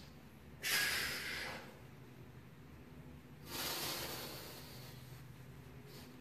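A man's audible breathing while he holds a bodyweight windmill stretch: two breaths, the first starting sharply about a second in, the second swelling and fading about three and a half seconds in.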